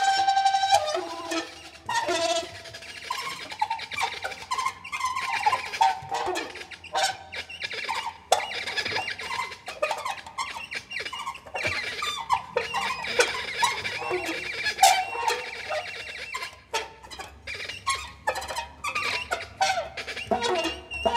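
Free-improvised duet of saxophone and violin: short, broken high-pitched phrases, squeaks and clicks jumping about in pitch, with no steady beat or held melody.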